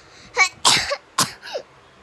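A young girl coughing in four short, sudden bursts over about a second and a half.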